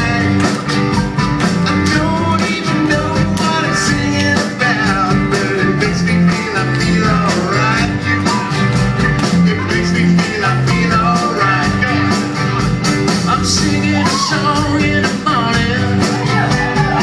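Live ensemble music: an upbeat rock song played on electric and acoustic guitars with a fiddle, over a steady beat.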